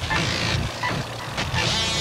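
Industrial hardcore breakdown without the kick drum: noisy, machine-like electronic textures with short high beeps and scattered percussive hits.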